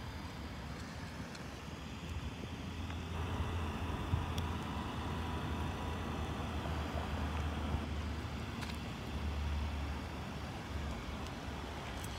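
Steady low outdoor rumble of background noise, with a couple of faint clicks.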